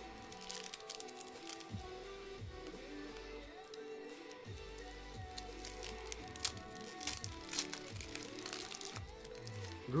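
Foil Pokémon booster pack wrapper crinkling in the hands as it is pulled open, in scattered short crackles over quiet background music.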